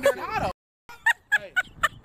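A voice cut off abruptly about half a second in, then after a brief gap a run of short staccato laughs, about four a second.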